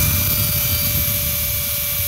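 Flex PD 2G 18.0-EC HD 18 V brushless cordless drill driver running unloaded in first gear with turbo mode on, at about 700 rpm. It gives a steady, even motor-and-gearbox whine at constant speed.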